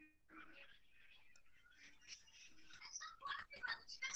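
Faint, whispery voices over a video call's audio, growing louder near the end.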